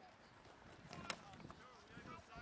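Faint, distant voices of players and spectators across an open field, with one sharp knock about a second in.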